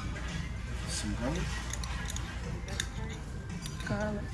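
Restaurant din: background music and indistinct talk, with light clicks and scrapes of a metal spoon and utensils on dishes.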